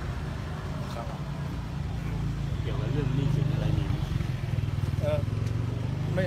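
Steady low hum of a motor vehicle engine idling close by, growing louder about halfway through, with a man's voice speaking faintly over it.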